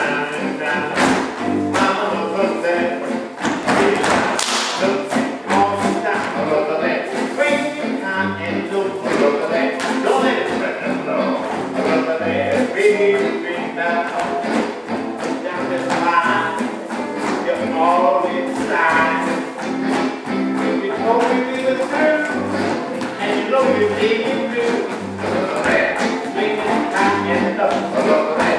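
Swing jazz music with a steady beat.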